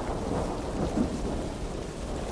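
Outdoor background noise: a low, uneven rumble with a brief louder bump about a second in.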